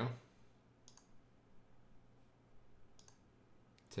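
A few faint computer mouse clicks, about a second in and again around three seconds in, over quiet room tone.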